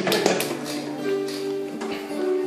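Acoustic guitar and electronic keyboard playing the instrumental opening of a pop ballad, with held keyboard notes, and a few light taps at the start.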